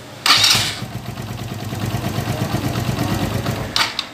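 Suzuki GS150 SE's single-cylinder four-stroke engine starting with a loud burst about a quarter-second in, then running at idle with a steady rapid beat. A second short burst comes near the end. The engine is run to check the newly fitted tachometer cable.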